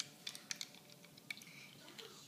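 A spoon stirring liquid in a plastic measuring jug: a few faint, scattered clicks and taps of the spoon against the jug.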